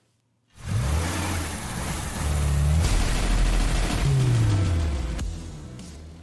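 A station sign-off sting in which a car engine sound with music starts about half a second in. The engine note holds, drops in pitch about four seconds in, and then fades out.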